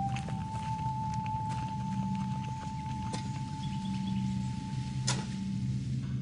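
Film score: a single high sustained note steps up in pitch and is held for about five seconds over a low droning chord. A sharp click comes about five seconds in.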